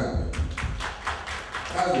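Small audience applauding briefly: a quick run of scattered hand claps.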